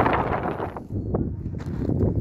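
Wind buffeting the microphone in a low rumbling rush, with footsteps crunching on a gravel path.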